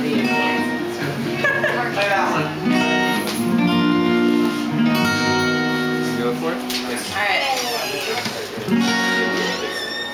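Live acoustic folk music: two acoustic guitars playing, with a voice singing over them.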